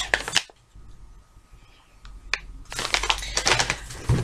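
Packaging rustling and crinkling as items are handled from a box: a short spell at the start, a single click in the middle, then denser crinkling in the last second or so.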